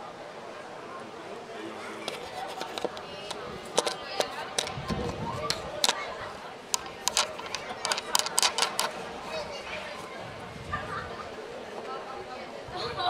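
Distant voices of players and onlookers chattering across an open sports field, with a scattered series of sharp clicks or claps that come in quick runs in the middle of the stretch, and a single dull thud about five seconds in.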